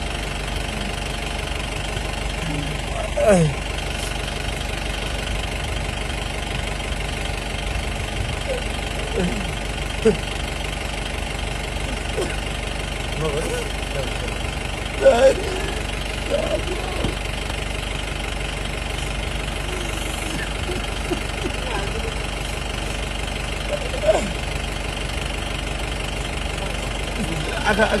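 A steady low mechanical hum, like an engine running, with short scattered bursts of people's voices over it; the loudest voice bursts come about three seconds in, about halfway through and near the end.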